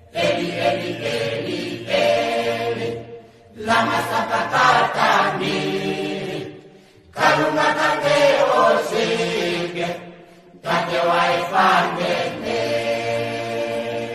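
Oshiwambo gospel song: sung voices with a steady backing, in four phrases of about three and a half seconds, each separated by a brief drop.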